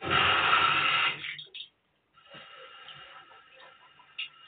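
Water running from a tap: a loud gush for about a second, a short break, then a quieter steady stream.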